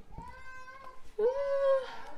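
A person's drawn-out, high-pitched vocal tone, then a lower drawn-out 'ooh' exclamation starting about a second in.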